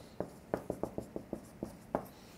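Marker writing on a flip chart: a quick run of about ten short, irregular squeaky strokes as a word is written out.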